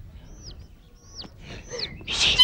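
Small birds chirping: about five short, high chirps, each sliding down in pitch.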